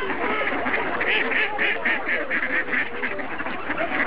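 A flock of mallard ducks quacking, many calls overlapping, with a fast run of quacks in quick succession about a second in.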